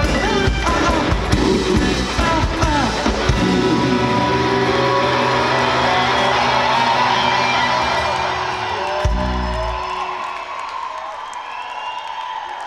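Live indie rock band of drums, bass and electric guitars playing the last bars of a song. The drums stop about three and a half seconds in and a held guitar chord rings on and slowly fades, with the crowd cheering and whooping as it dies away.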